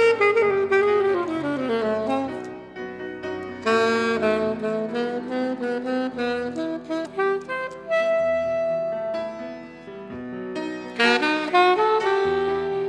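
Saxophone playing a melody live, with a falling run of notes in the first two seconds and a long held note about eight seconds in, over lower sustained notes.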